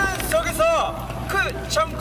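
Young men speaking Japanese through the playing video's sound, short phrases one after another, over a low steady rumble.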